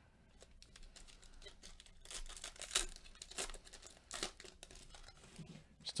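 Foil wrapper of a Panini Mosaic basketball card pack being torn open and crinkled, a faint run of crackles that is loudest in the middle.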